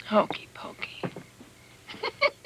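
A person's voice murmuring or whispering softly, the words not made out, in a few short sounds over the first second or so.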